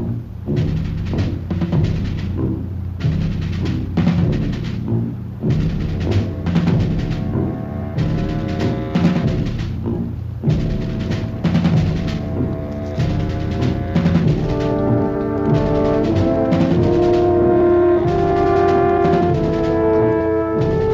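Orchestral TV score: timpani strike a steady beat over low brass, and sustained brass chords build up over the second half.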